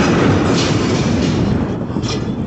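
Loud, continuous rumbling roar from an exploding army ammunition depot, picked up by a security camera's microphone, easing off slightly near the end.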